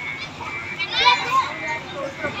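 Young voices chattering and calling out near the microphone, high-pitched and loudest about a second in.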